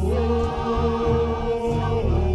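Mixed church choir singing a gospel hymn in Portuguese, holding a long note with vibrato, over a steady band accompaniment with bass.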